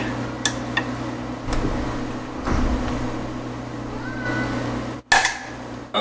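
An Allen key straining against a very tight steel Allen screw on a Sherline mill's Z-axis column, with faint clicks and a brief squeak about four seconds in. Just after five seconds the screw breaks free with a sudden loud pop.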